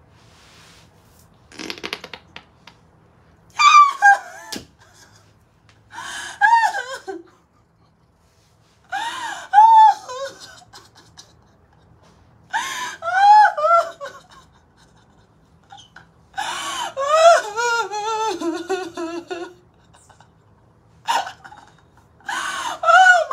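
A short, raspy flutter of air about two seconds in, a vaginal air release (queef) from a woman on all fours. It is followed by several long bouts of a woman's laughter, high and wailing.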